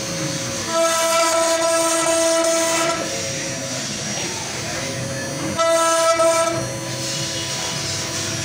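CNC router spindle running and carving a relief pattern into a wooden door panel: a steady whine over the noise of the cut. The whine gets louder for about two seconds near the start and again for about a second just past the middle.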